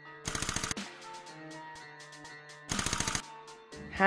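Two short bursts of very rapid clicking, each about half a second long and a little over two seconds apart, over faint background music.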